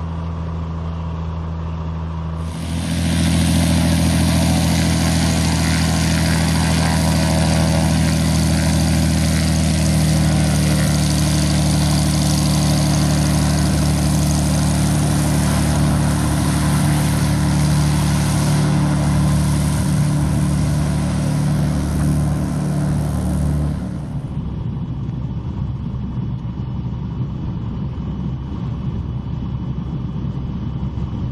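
Piper PA-32 Cherokee Six's six-cylinder engine and propeller running as the plane rolls along a dirt strip. At the start and end it is the steady, muffled engine hum heard inside the cockpit. About two and a half seconds in, the sound switches abruptly to a louder, hissier engine-and-propeller sound heard from outside beside the strip. That outside sound lasts about twenty seconds before it cuts back to the cockpit hum.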